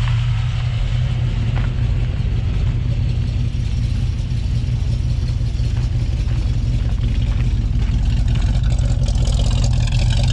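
1957 Chevrolet Bel Air's 350 V8 idling steadily through headers and dual exhaust, a deep even rumble that gets a little louder and harsher near the end.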